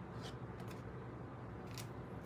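Faint handling of tarot cards: two soft, short swishes of card stock, one just after the start and one near the end, over a steady low hum.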